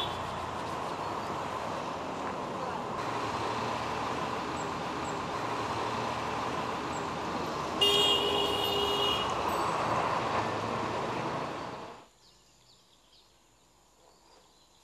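Steady street traffic noise, with a car horn sounding once for over a second about eight seconds in. The traffic sound cuts off suddenly near the end, leaving near silence.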